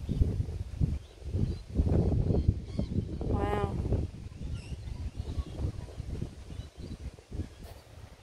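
Wind buffeting the microphone in uneven gusts of low rumble, strongest in the first half. A short pitched call sounds about three and a half seconds in.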